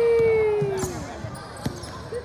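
A long drawn-out shout that sags in pitch and fades out about a second in, followed by a basketball being dribbled, its bounces sharp on the hardwood gym floor.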